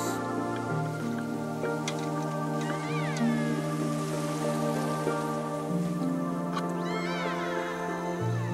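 Slow background music with long held chords that change every second or two. Two high gliding cries rise and fall over it, one about three seconds in and one near the end.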